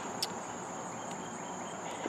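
Steady high-pitched trilling of insects, such as crickets, with one faint click about a quarter second in.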